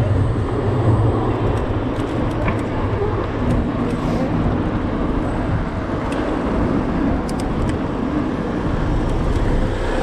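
Busy city-street traffic heard from a moving bicycle: buses and cars running close by, giving a steady low rumble of engines and road noise. A low hum fades over the first couple of seconds, and a few light clicks come through.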